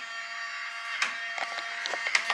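Front door being unlocked and opened, with a few short clicks over a steady high whine.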